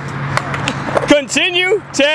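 Skateboard wheels rolling on concrete with a few light clicks. About a second in, a man's voice starts laughing over them.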